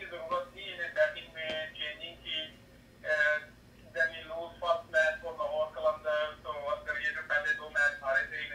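A person talking continuously, with a short pause about two and a half seconds in.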